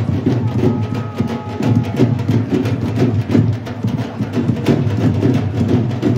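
Percussion played in a procession: a fast, steady rhythm of sharp drum strikes, several each second.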